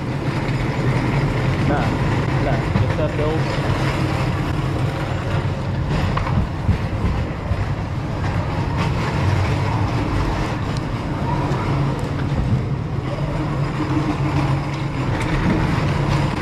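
Busy store din: a steady low rumble from plastic carts rolling across the floor, with indistinct shopper voices underneath.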